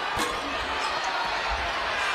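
Steady arena crowd noise with a basketball being dribbled on the hardwood court: a few short thuds, the lowest about a second and a half in.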